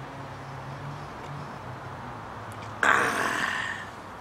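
A man's loud, breathy exhale after a swallow of champagne from a drinking horn, coming suddenly about three seconds in and fading over about a second. Before it there is only a faint low hum.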